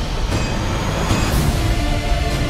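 Loud film-trailer sound design: a dense, heavy rumble with a few sharp hits, the first just after the start and two more about a second in.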